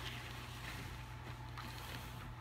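A steady low hum, with faint rustling from a black cloth bag being handled.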